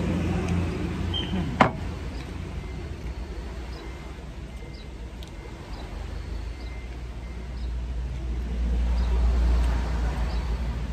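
Low road-vehicle rumble that swells over the last two seconds as a car passes on the road. A single sharp click comes about one and a half seconds in.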